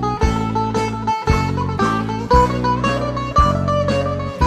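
Instrumental break in a live Greek laïko song: a bouzouki plays the melody over a bass and rhythm accompaniment that lands on a steady beat about twice a second.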